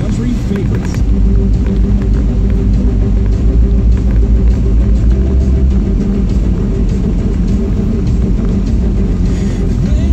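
Steady low road and engine rumble heard inside a moving car, with the car radio playing music and voices over it.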